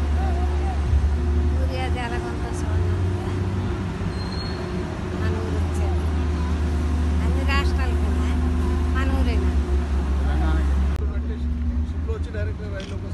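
Steady low engine rumble of heavy dockside machinery, with voices talking over it. The sound changes suddenly about eleven seconds in, the upper sounds dropping away.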